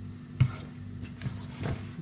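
A utensil knocks and clinks against a mixing bowl of cake batter a few times as it is worked; the sharpest knock comes about half a second in. A steady low hum runs underneath.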